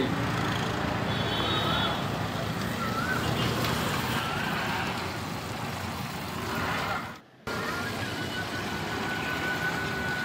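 Steady roadside traffic noise from passing cars and scooters, with a brief dropout about seven seconds in.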